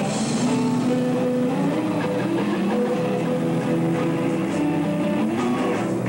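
Rock music led by guitar, holding notes that change every second or so.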